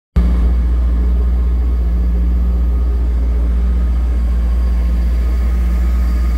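1996 Formula 252 BR bowrider's engine running steadily at low speed, a constant low rumble that does not change in pitch.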